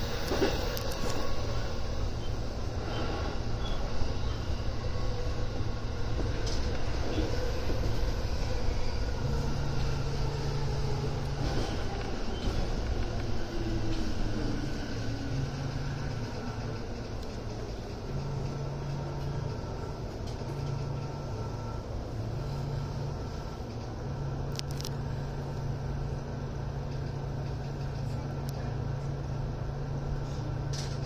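Running noise inside a Keihin-Tohoku Line E233 series electric train as it brakes into a station: a steady rumble of wheels on rail, with the motor whine falling in pitch as the train slows.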